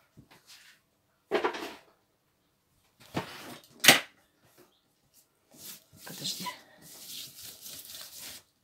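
Kitchen handling noises as a baking tray goes into an oven: a scraping rustle, then a sharp clack about four seconds in, the loudest sound, followed by softer knocks and rustles.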